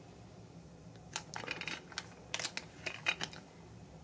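Thin clear plastic zip-lock bag crinkling in a few short crackles, starting about a second in, as a hand turns the silver coin inside it.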